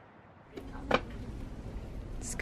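A single short knock or clack about a second in, over a low steady background rumble.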